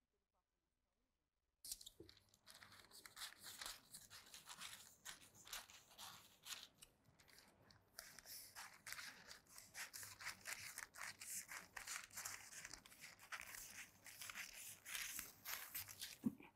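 Scissors cutting through thin pattern paper: a long run of faint, short snips starting about two seconds in and coming faster in the second half.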